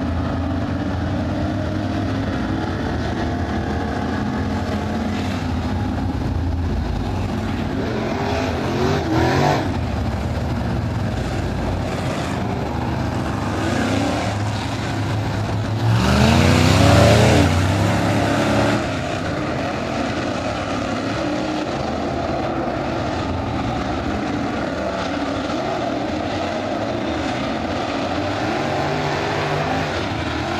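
A field of crate-engine V8 dirt-track race cars running laps, engines going throughout as they circle the oval. One pass goes by close at about nine seconds, and the loudest pass, with the engine pitch sweeping as cars go by, comes around sixteen to eighteen seconds in.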